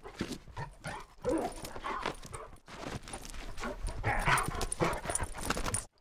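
A dog vocalizing in short, irregular bursts that stop suddenly near the end.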